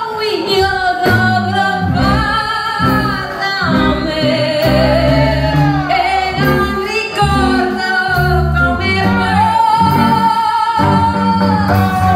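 Live rockabilly band: a woman sings long, sliding notes over electric guitar, upright double bass and drums, holding one long note near the end.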